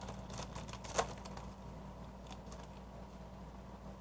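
Foil Pokémon trading-card booster pack wrapper being torn open and crinkled by hand, with a sharp crackle about a second in, then faint rustles as the cards come out, over a low steady hum.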